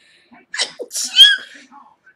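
A woman sneezing into her hand: a short burst about half a second in, then the louder main sneeze just after a second in.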